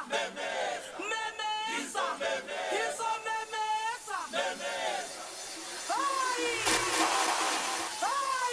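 Dance music breakdown from a club DJ set: the bass drops out and a chanted vocal phrase repeats about once a second. Near the end a noisy build rises into a low hit.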